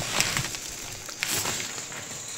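Light rustling with a few faint scattered clicks from dry soybeans shifting under a hand and the sacks and bags around them.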